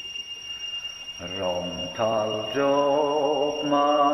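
A man's solo voice singing a hymn slowly in long held notes, starting about a second in after a brief quiet stretch.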